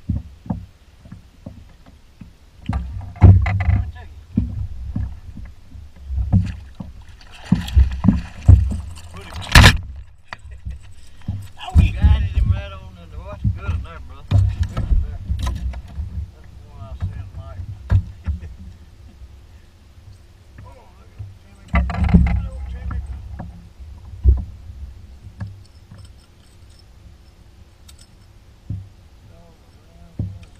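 Irregular low rumbling gusts of wind on the microphone, with knocks and rattles of fishing gear being handled on the deck of a bass boat and a sharp knock about ten seconds in. A faint steady hum runs through the second half.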